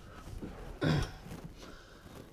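A man's short grunt of effort about a second in, against faint low background noise, as he leans on a wrench to break a seized tap joint.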